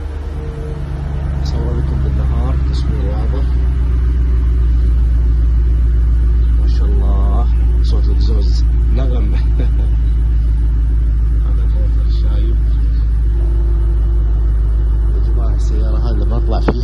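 Mercedes-Benz W124 E500's 5.0-litre V8 idling with a steady deep rumble, growing louder over the first few seconds and then holding even.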